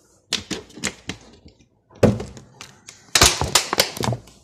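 Irregular sharp clicks and knocks from things being handled: a few light clicks, a heavier knock about two seconds in, and a quick run of loud clicks near the end.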